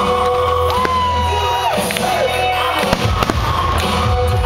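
Aerial fireworks bursting with sharp bangs, the loudest about three seconds in, over music with long held notes.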